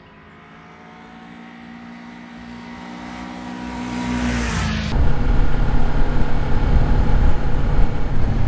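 Kawasaki Ninja 400 parallel-twin engine running at a steady cruise as the bike approaches, growing steadily louder, its pitch dipping slightly as it comes close. About five seconds in it cuts abruptly to a much louder, rougher low rumble of the bike heard up close.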